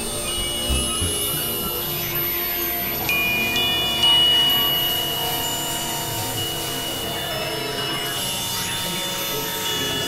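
Experimental electronic music: a dense drone of many overlapping steady tones, with high pure tones coming in and dropping out. It gets suddenly louder about four seconds in, then eases back.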